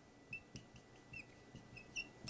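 Dry-erase marker squeaking on a whiteboard as letters and numbers are written: a string of short, faint squeaks that bend in pitch, with a few light taps of the tip.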